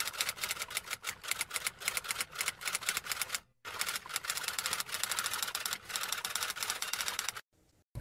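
Typing sound effect: a rapid run of key clicks, many a second, with a short break about three and a half seconds in, stopping shortly before the end.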